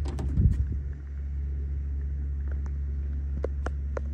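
A car door unlatched and swung open, followed by a steady low engine hum at idle and a few light clicks.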